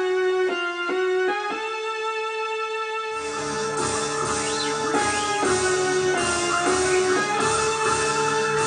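Korg M50 synthesizer on a vintage sci-fi lead patch playing a single-note lead line, stepping through a few notes and then holding one. About three seconds in a fuller backing with drums comes in underneath, and the lead continues with pitch slides.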